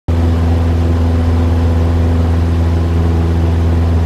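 Cessna 172SP's four-cylinder Lycoming engine and propeller droning steadily in flight, heard inside the cabin. The pitch holds level throughout, with no change in power.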